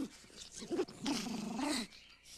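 An Ewok's growling chatter, a voice with a quickly wavering pitch lasting about a second, starting under a second in. The voice is a recorded human voice raised in pitch.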